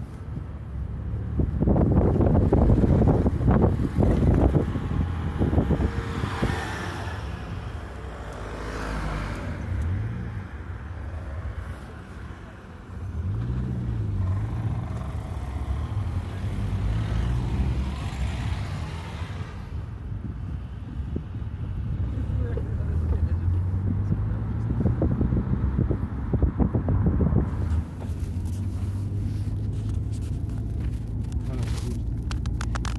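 A car driving, heard from inside the cabin: steady low engine and road rumble, loudest over the first few seconds, with the engine pitch wavering up and down about halfway through.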